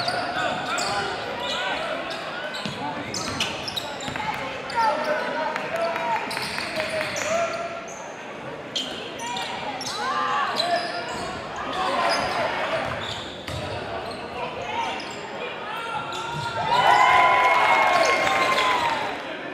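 Live court sound of a basketball game in a gymnasium: the ball bouncing on the hardwood, sneakers squeaking as players cut, and scattered voices from players and spectators. A longer, louder squeak comes near the end.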